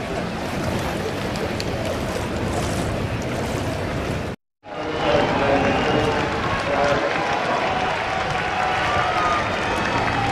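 A crowd of spectators shouting and cheering, many voices at once with no clear words. The sound cuts out completely for a moment about four and a half seconds in, then the crowd's shouting comes back louder.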